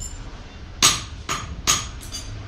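Three sharp metallic knocks about half a second apart, each with a brief ring, from the steel parts of a homemade spring-rolling machine being knocked together by hand.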